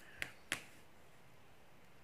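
Two short, sharp clicks about a quarter of a second apart near the start, then faint room tone.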